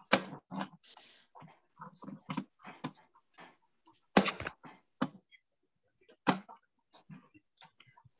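Kitchen knife chopping a block of unscented candle wax on a cutting board: irregular knocks of the blade striking the board, the loudest about four seconds in.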